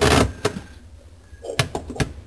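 Plastic filter of a Whirlpool WDT710PAYM dishwasher being pulled out of its housing at the bottom of the tub after being unlocked: a short loud scrape at the start, then a few light clicks near the end.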